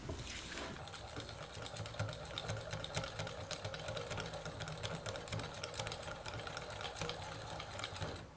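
Wire balloon whisk beating soft butter, sugar and egg in a glass bowl, its wires ticking quickly and evenly against the glass. The egg is being worked into the butter until fully combined, for an almond cream filling.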